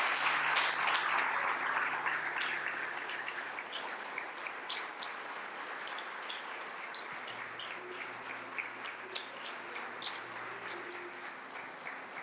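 Congregation applauding, loudest at the start and slowly dying away into scattered claps.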